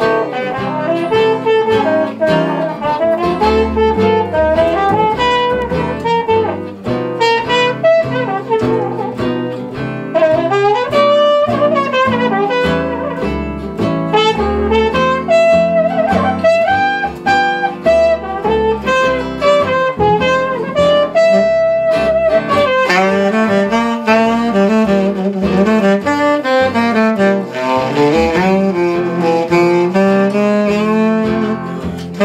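Unamplified small swing jazz band playing: a trumpet with a straight mute plays the melody over archtop guitar chords and upright bass, and about 23 seconds in a saxophone takes over the lead.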